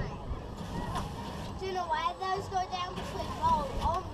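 Children's voices talking and calling out in short bursts, over a steady low rumble.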